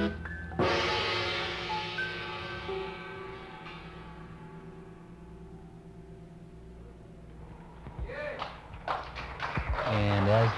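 A live jazz band finishes its closing number. A held chord cuts off, and about half a second in a final chord is struck and left to ring, fading slowly over several seconds.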